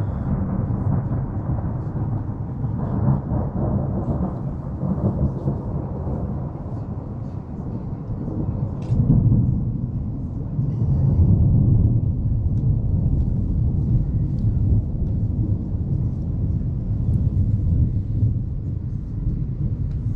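Thunder rumbling continuously and deeply during a thunderstorm, swelling louder about nine seconds in and again around eleven to twelve seconds in.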